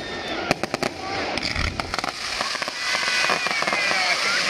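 Fireworks display: a quick series of sharp bangs and crackles from bursting shells, thickest in the first second, then a thicker, louder hiss and crackle of sparks building toward the end.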